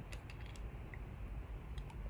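A few faint, small clicks and lip smacks from puffing on a tobacco pipe with its stem held between the lips, over low steady room noise.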